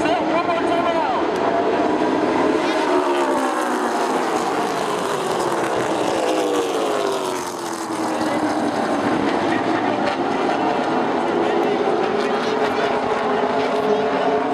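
A pack of short-track stock cars' V8 engines racing together, several engine notes overlapping. Their pitch falls in the middle as the cars slow into the turn, dips briefly, then climbs again as they power out.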